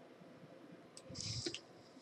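Near silence, then about a second in a faint mouth click and a short breath in, just before speech.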